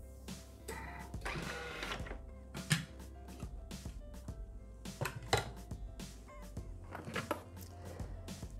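Quiet background music, with a few sharp plastic and metal clicks and knocks as a Thermomix lid is unlatched and lifted and its steel mixing bowl is taken out. The loudest click comes a little under 3 seconds in and another about 5 seconds in.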